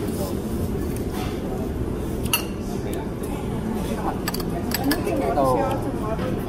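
Spoons and ceramic dishes clinking a few times, mostly in the second half, over a steady low hum of restaurant background noise, with faint voices near the end.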